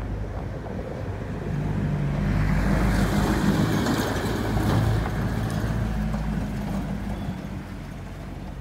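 A motor vehicle passing by: engine and road noise build up about a second and a half in, are loudest in the middle and fade away near the end.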